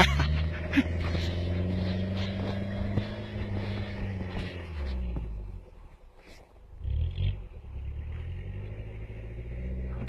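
Jeep Cherokee's engine running under load as it pulls through deep snow, its pitch rising and falling slowly. The engine sound drops away briefly about six seconds in, then returns.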